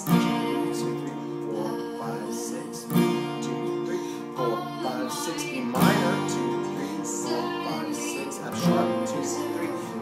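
Acoustic guitar with a capo, strummed slowly from a C chord shape, with a hard downstroke about every three seconds and lighter strums between, played along with a recording of the song.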